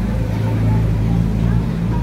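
A steady low engine hum, like an engine idling, with a faint murmur of voices behind it.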